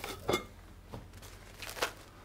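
Hands rubbing butter into flour in a glass mixing bowl: four short bursts of rubbing noise, the loudest about a third of a second in.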